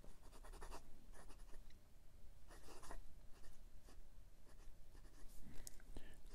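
Steel No. 6 calligraphy nib of a fountain pen faintly scratching across Clairefontaine 90 gsm paper in a run of short pen strokes, writing a word in cursive.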